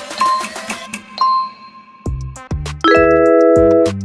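Quiz countdown music with a short high beep about once a second, the last beep ringing on longer as the time runs out. A beat then starts, and a loud bell-like chime of several tones sounds near the end and is held for about a second: the answer-reveal signal.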